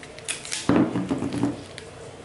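Masking tape being torn from its roll and pressed onto a galvanized steel pipe: a short rasping tear about two-thirds of a second in, with light handling clicks around it.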